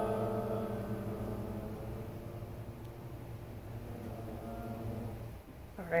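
A small group of classmates singing a held chord that fades slowly under the conductor's diminuendo, then cuts off about five seconds in.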